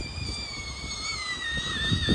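A young child's long, high-pitched squeal or whine, held on one note that sinks slowly in pitch.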